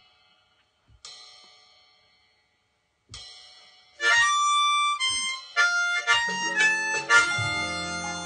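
Slow blues backing track in F opening with a few sparse struck hits that ring out and fade, about two seconds apart. About four seconds in, a B-flat diatonic harmonica comes in loud, played in second position, with held, changing notes over the backing's bass and chords.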